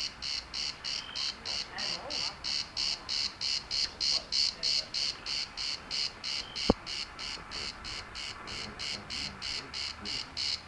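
An insect chirping in a steady, even rhythm of about three to four high-pitched pulses a second, with one short sharp click about two-thirds of the way through.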